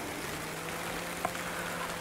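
Rain coming down hard: a steady, even hiss, with a faint steady low hum underneath.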